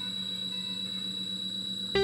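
Ambient background music: a sustained electronic drone with a steady high tone over a low note that pulses gently. A louder new musical passage comes in sharply right at the end.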